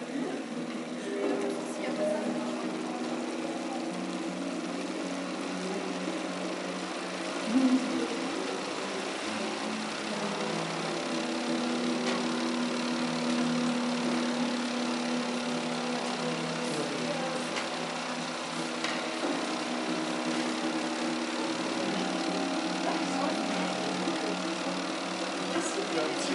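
A sustained drone of several held pitches that shift slowly, over a steady hiss.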